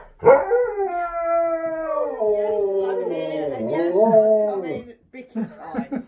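Husky-type dog 'talking': one long howl-like call that starts high, slowly falls in pitch and wavers near the end, followed by a few short calls.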